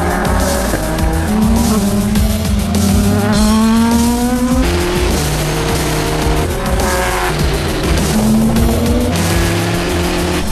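Race car engine revving, climbing steadily in pitch for about three seconds before dropping sharply on a gear change, then pulling up again briefly near the end. Music with a steady bass line plays beneath it.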